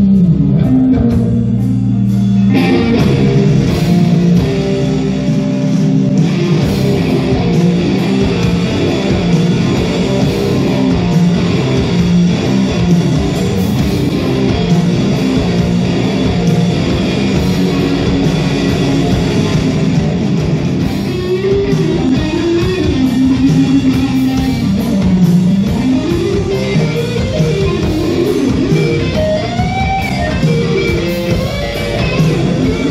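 Live rock band playing in a club: electric guitars with bass and drums. Held guitar chords open it, the full band with drums comes in about two and a half seconds in, and a bending melody line rises and falls over the last third.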